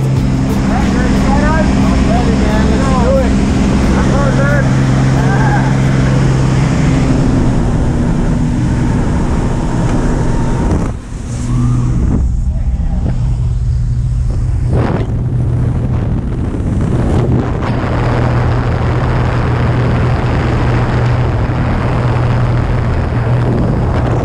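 Steady drone of a small propeller plane's engine heard from inside the cabin, with rushing wind noise. Raised voices can be heard over it in the first few seconds, and the sound dips and cuts briefly about halfway through.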